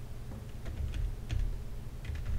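Computer keyboard keys being pressed, a few scattered clicks.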